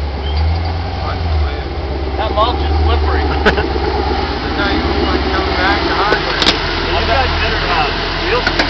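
Rock-crawler buggy's engine running at low revs with a deep steady rumble as it crawls off a rock ledge, with people talking over it. A few sharp clicks come about three and a half and six and a half seconds in.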